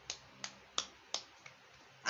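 Sharp clicks in a steady rhythm, about three a second: five in a row, the last one faint.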